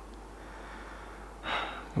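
A man's close-miked breath: one short, audible intake of breath about one and a half seconds in, over a faint steady hiss.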